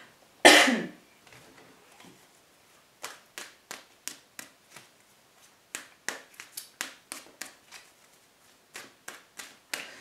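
A single cough about half a second in, then a run of light, sharp snaps and clicks, two or three a second, from a tarot deck being handled in the hands.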